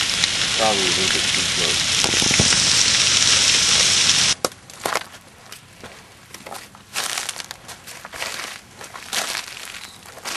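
Brush fire burning close by: a loud, steady hiss with crackling. About four seconds in it cuts off suddenly, leaving quieter scattered crackles and snaps.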